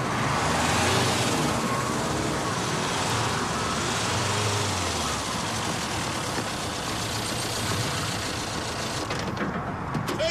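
A van's engine and tyres on the road as it drives close past, loudest about a second in, then running on more steadily.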